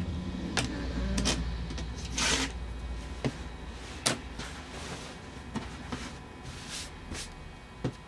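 Rotary cutter slicing through the edge of a flannel quilt top along an acrylic ruler on a cutting mat, with a short scraping cut stroke and scattered clicks and knocks as the ruler and cutter are moved. A low hum runs under the first three seconds.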